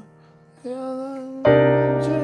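Chords played on a Nord stage keyboard's piano sound. A softer held tone comes in about two-thirds of a second in, then a loud, full C minor 9 chord with a deep bass note is struck about a second and a half in and rings on.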